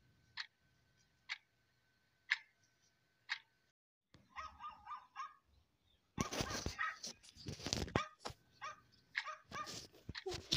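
Sharp ticks about once a second for the first few seconds, then, after a brief gap, a small dog whining, followed by loud, rapid yapping barks from about six seconds on.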